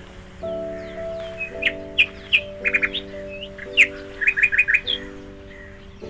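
Birds chirping over soft background music of held chords: single sharp chirps, then quick runs of four or five chirps, which are the loudest sounds.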